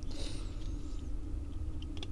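A 1:64 diecast toy car being handled on a tabletop: a brief, thin, high squeak that slides downward in pitch in the first second, then a few faint light clicks near the end, over a low steady hum.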